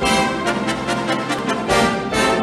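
Orchestra playing the brisk opening of a 1950s Broadway show tune, with brass to the fore.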